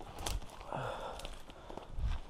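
Footsteps crunching and brushing through dense undergrowth of twigs and ferns, with a few sharp snaps and a breath about a second in.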